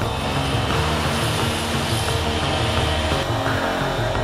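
CoreCut CC300M electric paver saw, a 2-horsepower motor driving a 14-inch diamond blade, running and cutting through a masonry paver over background music. The cutting noise stops abruptly about three seconds in, and the music carries on.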